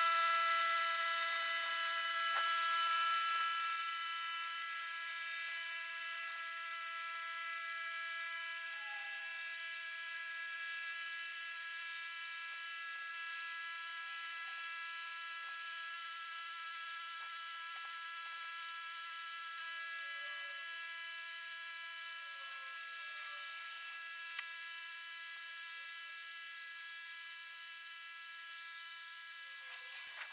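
The Weedinator autonomous electric tractor and its onboard Honda generator, heard fast-forwarded: a high, steady buzzing whine that slowly fades as the machine drives away.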